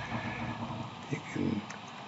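A man's faint, hesitant vocal murmur, wordless, with a couple of soft mouse clicks.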